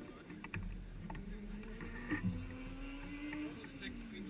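A Formula Student race car's engine idling while the car stands still, its pitch drifting slowly up and then dropping near the end, with a few faint clicks.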